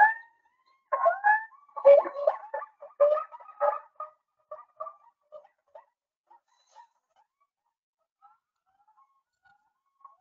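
Hoolock gibbons giving their territorial call: a run of loud whooping notes that glide upward in pitch. About four seconds in the notes thin out and grow fainter, leaving only scattered faint calls near the end.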